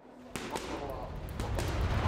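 Boxing gloves smacking against focus mitts in a few quick, sharp hits, with music fading in near the end.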